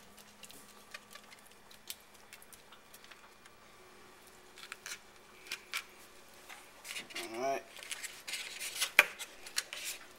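A foil seasoning packet crinkling and crackling in the hand near the end, with a sharp crackle about a second before the end. Before it, only faint light clicks of hands handling the hens, and a brief voiced hum a little after seven seconds.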